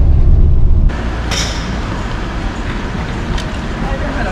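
Low rumble of a moving vehicle for about the first second, cutting off abruptly to a quieter, steady outdoor noise, with a short sharp knock shortly after.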